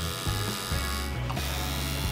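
Tattoo machine buzzing steadily as the needle works on skin.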